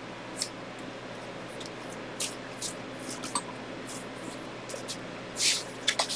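Tarot cards being shuffled and drawn by hand: a few short, soft swishes of card sliding on card, the largest near the end, over a steady low hiss.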